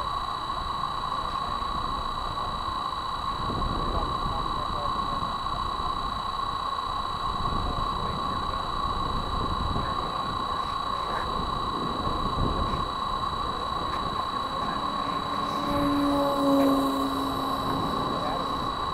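Wind buffeting the microphone of a camera sitting on the ground, over a steady high-pitched whine; a short low hum comes in near the end.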